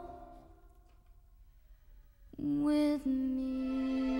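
The last held note fades away and there are about two seconds of near silence. Then the orchestra comes back in with a single sustained note, building into a soft, held chord.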